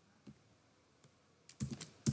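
Computer keyboard typing: a couple of faint, isolated key taps, then a quick run of louder key clicks in the last half second.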